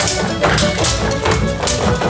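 Live folk dance music with sharp percussive taps from the dancers, about two to three a second, in time with the music.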